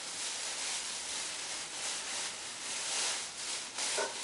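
Thin plastic grocery bag rustling and crinkling as a bunch of celery is pulled out of it.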